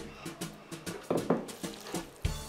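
Irregular light clicks and scrapes of a utensil against a pan as spaghetti is tossed and stirred in its tomato sauce.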